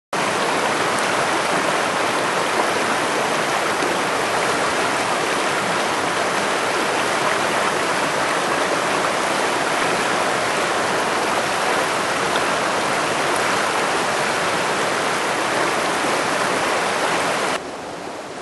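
Steady rushing of stream water, cutting off suddenly near the end.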